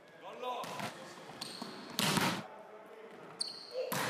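Volleyball being struck hard and hitting the floor in a gym hall: a loud smack about two seconds in and another near the end, each echoing briefly.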